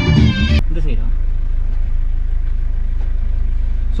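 Background music cuts off about half a second in, leaving a steady low rumble from a Mahindra Scorpio heard inside its cabin.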